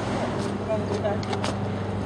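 A steady low hum over outdoor background noise, with a few faint brief sounds above it.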